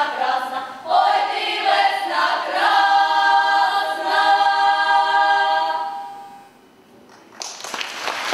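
Girls' folk choir singing a Ukrainian folk song a cappella in harmony, ending on a long held chord that fades out about six seconds in. A second later applause starts near the end.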